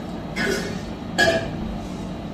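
Glass mixing bowl of sliced ginger being handled and tilted, making two short clatters; the second one rings briefly.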